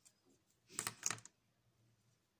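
Plastic felt-tip markers clicking and tapping as they are handled and swapped, with a cap pulled off or pushed on: a quick run of several clicks about a second in.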